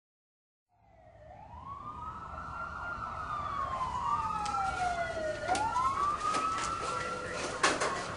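Emergency vehicle siren wailing, its pitch sweeping slowly up and down over low traffic-like rumble. It fades in about a second in and grows louder, with a few sharp clicks near the end.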